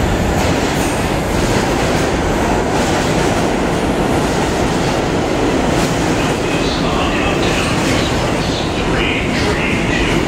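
New York City subway train moving along the platform track, running loud and steady, with a few faint higher tones near the end.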